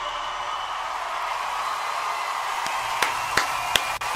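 Audience applause, a steady wash of clapping, right after a song ends. About three seconds in, a few loud, sharp hand claps close to the microphone come in over it.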